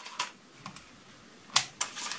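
Plastic arms of a foldable toy quadcopter being swung open by hand and clicking into their interference catches: a few short clicks, the loudest about one and a half seconds in.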